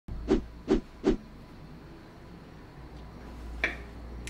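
Three quick knocks about 0.4 s apart in the first second or so, over a low steady hum, with one fainter short click near the end.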